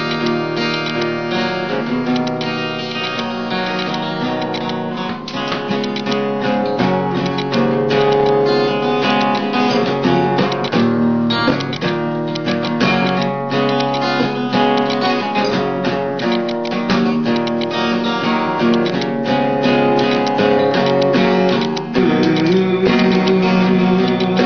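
Acoustic guitar strummed in a steady, continuous chord pattern, the chords ringing together, with a brief break in the strumming near the end.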